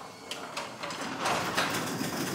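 A sectional garage door moving in its tracks under a Genie wall-mounted opener, a steady rolling noise that grows louder about a second in. It is a safety-beam test: the blocked beam makes the door reverse.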